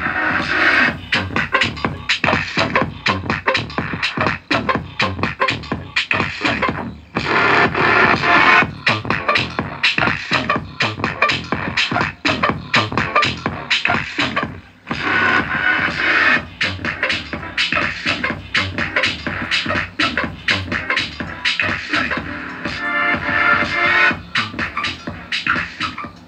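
Electronic dance music played through a small DIY CD6283 class AB amplifier (15 + 15 W) driving two bare 5-inch subwoofers with no enclosure, as a bass sound test. It is a loud, steady beat, with short breaks in the track about seven and fifteen seconds in.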